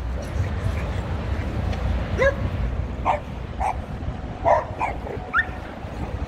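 Dog yipping during rough play: a string of short, high yaps from about two seconds in, some rising in pitch.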